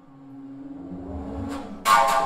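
Bass flute with live electronics: a single low held tone that swells steadily louder, then sharp percussive attacks, a first one about a second and a half in and a much louder, ringing one near the end.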